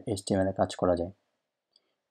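A man's voice speaking for about a second, then silence.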